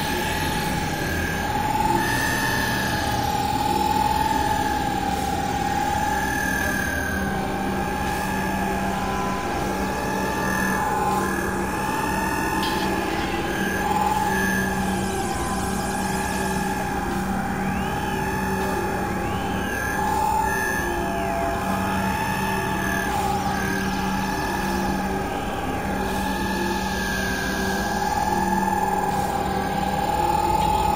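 Layered experimental electronic music: a sustained high tone, doubled an octave above, wavers slowly up and down like a slow siren over a steady low drone and a dense noisy texture.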